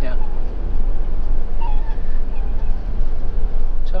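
Motorhome driving slowly, heard from inside the cab: a steady low rumble of engine and road noise.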